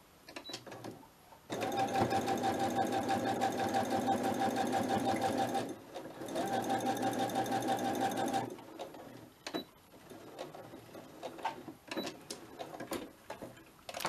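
Electric domestic sewing machine stitching through layered fabric and lace in two runs of about four and two seconds with a brief stop between, the needle's rapid even ticking over the motor's hum; the second run starts with the motor speeding up. Small handling clicks follow after it stops.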